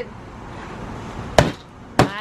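Claw hammer striking a small paper piñata on a folding table: one sharp knock about one and a half seconds in and another right at the end, over faint steady background noise.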